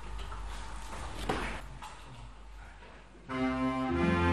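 Quiet church room tone with a brief noise about a second in. About three seconds in, the instrumental introductory piece begins: clarinets and a double bass come in together on sustained notes.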